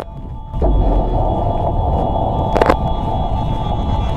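Outro sound effect for a channel logo: a deep, steady rumbling drone swells in about half a second in, with one sharp hit a little past the middle.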